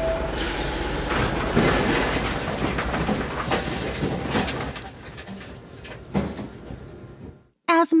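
Cartoon sound effect of a dump truck's bed tipping and a load of sand pouring out: a rushing, sliding noise with a few knocks, loudest at first and fading away over about seven seconds.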